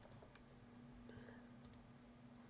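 Near silence: room tone with a faint steady low hum and a few faint computer mouse clicks.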